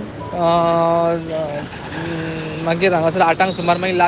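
Voices singing a devotional song: one long held note about a second into it, then the melody moving on through the next line.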